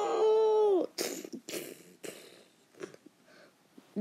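A child's voice acting out a dinosaur's dying cry: one long, held wail that cuts off suddenly under a second in. A few faint breaths and small clicks follow.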